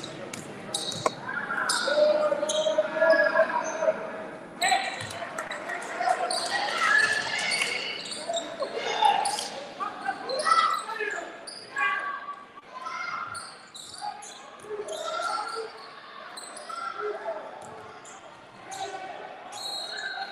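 Basketball game play on a hardwood gym floor: a basketball bouncing in irregular knocks, with players and spectators calling out in the hall.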